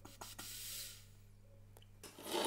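Breath blown through the hole in a plastic bottle cap into a balloon membrane stretched over the bottle top: a soft airy rush lasting about a second, with a few light ticks just before it. A faint steady low hum sits underneath.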